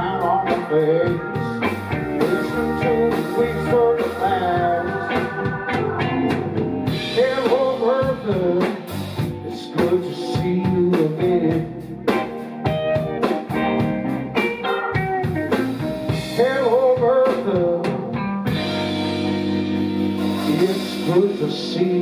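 Live blues band playing an instrumental passage: electric guitar lead lines with bent notes over organ, bass and drums. In the last few seconds the drums drop out and the band holds a long sustained chord as the song winds down.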